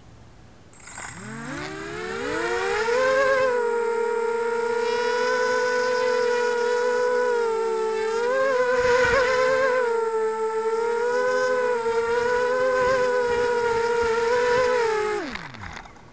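Quadcopter's brushless 2204 motors on Emax 12A ESCs spooling up about a second in with a rising whine, holding a steady multi-tone whine with small wavers in pitch through a short flight, then winding down and stopping just before the end. Heard close up from the drone's onboard camera.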